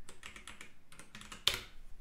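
Computer keyboard being typed on: a run of quick, light key clicks, with one louder keystroke about one and a half seconds in.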